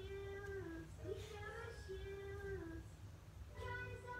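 Faint humming of a slow tune in long held notes, each about a second long and stepping slightly in pitch from one to the next.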